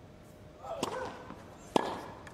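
Tennis racket strings striking the ball twice, a serve and then a return just under a second later. The second hit is sharper and louder.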